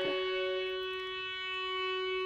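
Accompanying instrument holding one sustained chord, several steady notes droning on without change, fading slightly in the middle.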